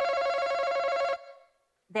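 Game-show face-off buzzer going off: one steady, harsh, pitched buzz lasting about a second, the signal that a contestant has buzzed in to answer.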